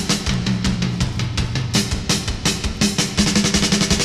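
Instrumental intro of an indie pop song: a drum kit beat over low bass notes, the hits growing busier into a drum fill near the end.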